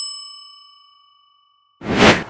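A single bright bell-like ding sound effect, struck just as the logo completes, ringing out and fading away over about a second. A rush of noise starts near the end.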